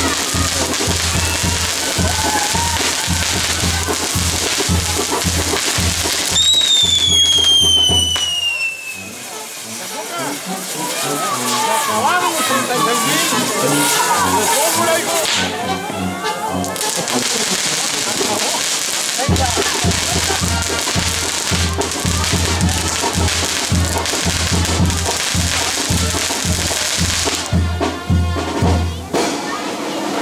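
Fireworks castillo burning: dense, continuous crackling and sizzling from its spinning spark-throwing pieces, with a falling whistle at about seven seconds. Music and crowd voices run underneath.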